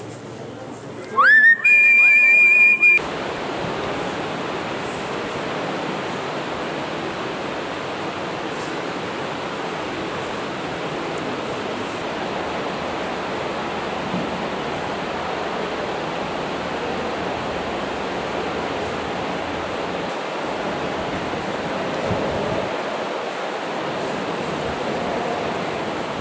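A shrill whistle-like tone about a second in, rising in pitch and then holding steady for under two seconds before cutting off. It is followed by a steady, even rushing noise.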